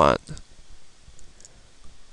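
A few faint clicks of a computer mouse over low background hiss.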